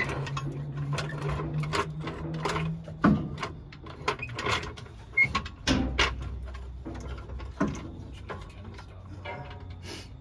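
Floor jack being slid under the car and set beneath the transmission: a run of irregular metallic clicks and clanks, over a low steady hum for the first few seconds.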